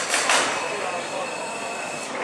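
Beetleweight combat robots in the arena: a burst of hissing scrapes in the first half second, then a steady high-pitched motor whine.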